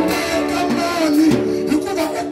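Live church worship music: a band with a keyboard playing sustained chords while voices sing gliding melody lines over it.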